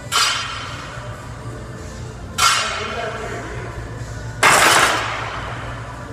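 Three sudden noisy bursts about two seconds apart, one with each rep of a 135 lb incline barbell bench press; the third is the loudest and longest. Faint steady background music under them.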